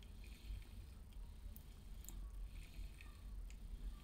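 Faint rustling and scraping of a small wheeled robot being slid by hand across paper sheets, with a few light clicks.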